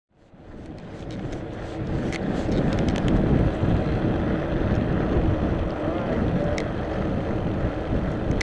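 Bicycle riding on pavement: wind rushing over the microphone and the rumble of tyres on asphalt, with scattered small clicks and rattles from the bike. It fades in over the first two seconds, then holds steady.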